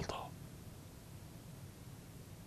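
A man's spoken word trailing off at the start, then a pause of faint room tone with a low steady hum.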